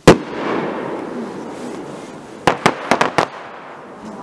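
Aerial fireworks: one loud shell burst right at the start, its boom echoing and fading over about two seconds, then about two and a half seconds in a quick run of five sharp cracks.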